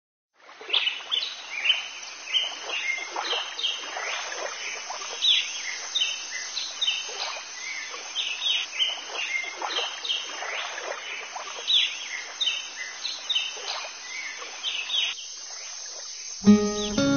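Birds chirping in a rapid series of short, repeated calls over a steady background hiss of outdoor ambience. It starts about half a second in and stops about a second before the end.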